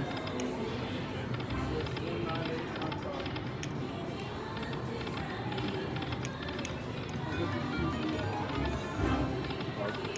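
Buffalo Gold slot machine spinning its reels, its electronic tones and jingles layered over the steady din of a casino floor with voices in the background.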